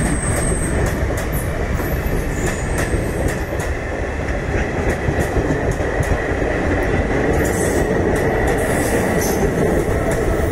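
Indian Railways passenger coaches rolling past close by at reduced speed: a steady heavy rumble of wheels on rails with irregular clicks over the joints, and a few brief high-pitched squeals.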